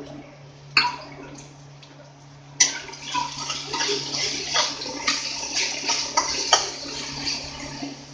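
Onion paste sizzling in hot oil in a kadai, with a metal spatula scraping and clicking against the pan as it is stirred. A single knock comes just under a second in, and the sizzle rises suddenly about two and a half seconds in.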